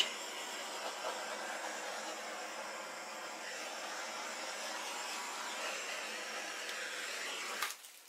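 Handheld butane torch flame hissing steadily as it is passed over wet acrylic pour paint to pop air bubbles. The flame shuts off abruptly near the end.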